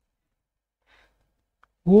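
Near silence: quiet room tone with a faint, brief hiss about a second in, then a man's voice begins near the end.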